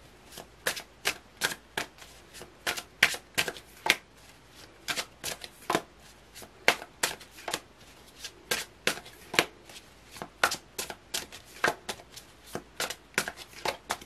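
A tarot deck being shuffled by hand: a quick, irregular series of short card slaps and riffles, about two to three a second.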